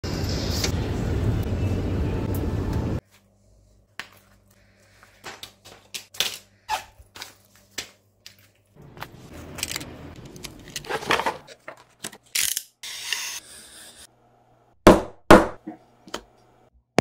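Loud steady noise on a shopping-mall escalator that cuts off abruptly after about three seconds, then scattered light clicks and taps of bank cards and banknotes handled on a wooden table, then a stretch of scraping and handling noise. About a second before the end come two loud sharp strikes close together, a metal hollow punch hit to cut holes in leather.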